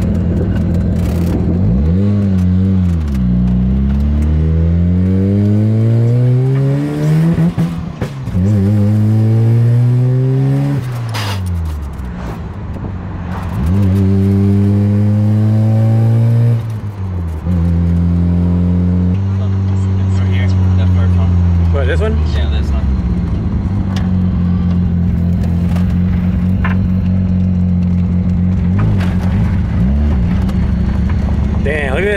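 Mazda RX-7 FD's twin-turbo 13B rotary engine heard from inside the cabin, pulling hard through the manual gears: the engine note climbs in pitch and drops back at each of three upshifts, then settles to a steady cruise for the last third.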